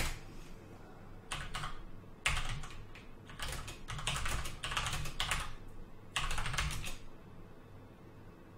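Typing on a computer keyboard in several quick bursts of key clicks with short pauses between, stopping about seven seconds in.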